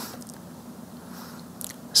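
Quiet room tone with a steady low hum from the podium microphone during a pause in speech, and a few faint clicks shortly before talking resumes.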